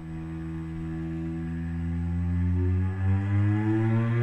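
Solo cello holding one long low bowed note that swells steadily louder, with a brief dip about three seconds in.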